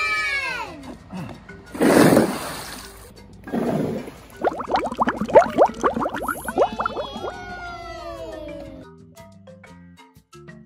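A bucket of small rubber bouncy balls tipped into a backyard swimming pool: a loud splash about two seconds in and a smaller one near four seconds, then underwater bubbling chirps, with music and a falling glide over it toward the end.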